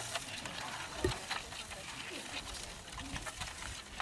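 Faint murmur of voices in a lecture room, with scattered light clicks and a brief low vocal sound about a second in.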